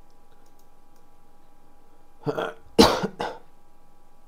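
A person coughing three times in quick succession, starting a little past two seconds in, the middle cough the loudest.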